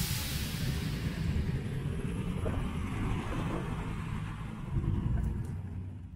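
Street traffic of motor scooters idling and creeping along in a queue: a steady low rumble of small engines, swelling slightly near the end before fading out.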